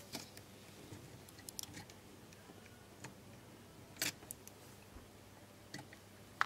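Faint scattered small clicks and rustles of hands handling wires on a contactor's screw terminals, the sharpest click about four seconds in, over a faint steady low hum.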